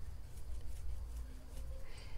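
Low steady room hum with faint, soft ticks and rustles of acrylic yarn being pulled through a crochet hook while chaining stitches.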